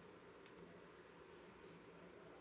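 Near silence, broken by two faint, short clicks about half a second and a second and a half in.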